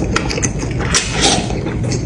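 A man slurping noodles into his mouth from chopsticks: a few short sucking slurps, the longest about a second in.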